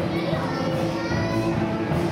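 Music with held notes, with the voices of a large children's choir over it.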